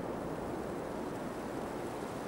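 Steady wind and rain noise, an even hiss with no distinct events.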